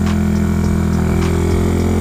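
Yamaha Mio Sporty scooter's engine running at a steady speed while riding, a steady hum.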